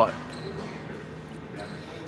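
A single spoken word, then a pause holding only the steady background hum and hiss of a large store's interior.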